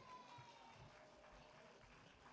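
Near silence: faint background hiss in a pause between spoken sentences.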